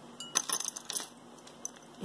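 Costume jewelry clinking and jangling as pieces are handled from a tangled pile: a quick run of small metallic chinks in the first second, then one faint click near the end.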